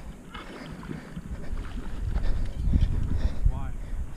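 Wind rumbling on the microphone, growing louder partway through, with a brief faint voice near the end.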